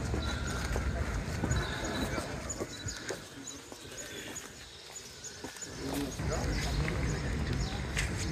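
A group of people walking together on a paved path, their hard-soled shoes tapping unevenly, with low murmuring voices and scattered sharp clicks. A low rumble fades out a few seconds in and returns near the end.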